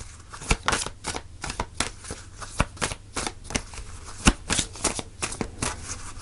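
A deck of cards being shuffled by hand: quick, irregular snaps and slaps of the cards, several a second.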